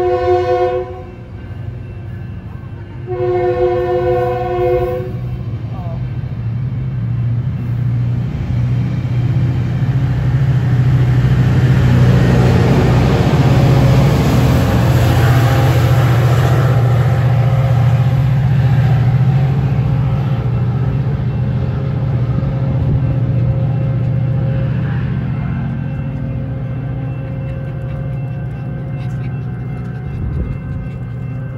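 Metrolink commuter train's horn giving a short blast, then a longer one of about two seconds. The train's low diesel rumble and rail noise follow as it pulls out past the platform. The rumble is loudest midway, as the locomotive at the rear goes by, then slowly fades as the train draws away.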